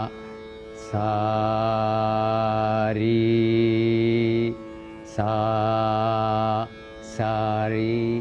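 A man's voice slowly singing Carnatic swara syllables (sa, ri, ga) in three held phrases, each note sustained for a second or two, with short pitch glides joining one note to the next. This shows notes joined by gamaka at a slow tempo. A steady drone runs underneath.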